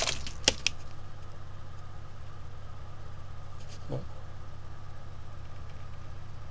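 Bedini energizer pulse motor running steadily, its rotor spinning at about 500 rpm, with an even, fast-pulsing hum as the coils fire. A few sharp clicks in the first second.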